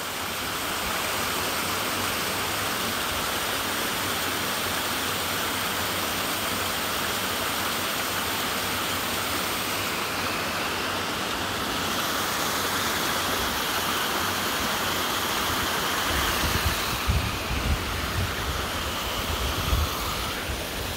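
A hundred-foot waterfall with not a lot of water falling onto rocks: a steady rushing noise. Low rumbling bumps on the microphone come in over the last few seconds.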